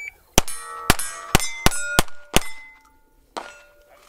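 KelTec CP33 .22 LR pistol firing a fast string of six shots in about two seconds, each shot followed by the ring of a steel plate being hit. A shot timer's beep is just ending as the string begins, and one more ringing clang comes about a second after the last shot.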